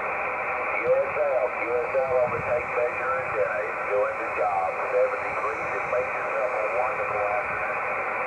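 A distant ham radio station's voice reply heard through a small HF transceiver's speaker: thin, band-limited single-sideband audio, the words faint and unclear under a steady hiss of band noise.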